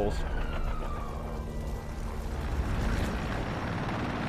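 Erickson S-64 Air-Crane heavy-lift helicopter hovering: a deep steady rumble of rotor and twin turbine engines, with a louder rushing noise building over the second half. A faint whine slides down and fades in the first second.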